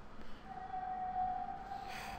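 A quiet, single steady pitched tone starts about half a second in and holds for about a second and a half over faint room hiss.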